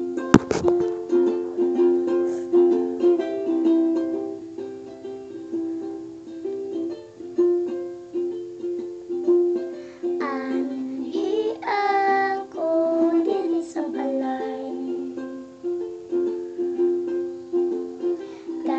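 Ukulele playing a plucked accompaniment in a small room. A sharp click comes just after the start, and a girl's singing voice comes in about ten seconds in, with more sung phrases near the end.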